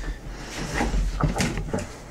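A plastic bucket being handled and its snap-on lid pulled open: a few light knocks and clicks of hard plastic.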